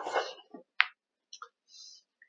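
A single sharp click about a second in, among a few brief faint noises, heard over a video call's audio.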